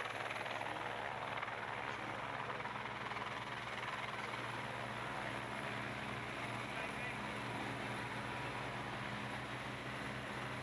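Steady engine drone of the race's camera vehicles on the broadcast's ambient track, with a faint low hum held throughout.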